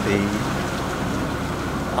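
Steady rushing hiss of wind and sea water aboard a sailing yacht under way, with a low steady hum underneath.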